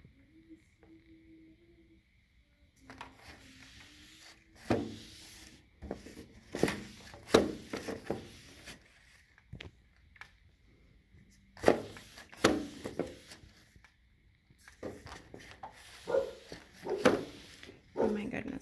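Blind slats clacking and knocking against each other, with rubbing, as a microfibre dust mitt is wiped along them. The clacks come irregularly from about three seconds in, in clusters with short pauses between.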